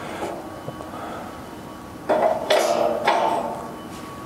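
Steel locking bolt being pushed in and turned in the fork pocket of a steel forklift work basket: a small click, then about a second of louder metallic scraping and clinking just past the middle.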